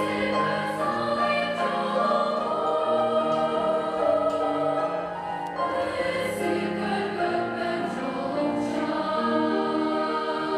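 A large children's choir singing sustained melodic lines together with a female solo singer on a microphone.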